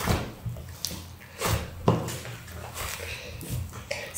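Homemade and store-bought slime being kneaded and squeezed by hand, with a few short squelching clicks as it is pressed and pulled.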